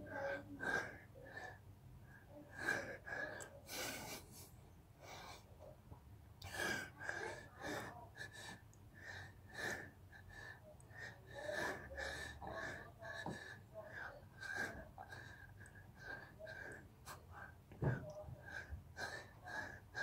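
A man breathing hard through a set of push-ups: wheezing breaths and gasps, about one a second, in rhythm with the push-ups.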